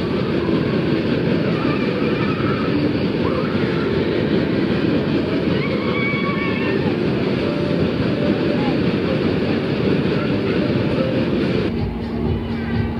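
A Matterhorn fairground ride running: a loud, steady rumbling din with riders' voices calling out over it. The din cuts off abruptly near the end.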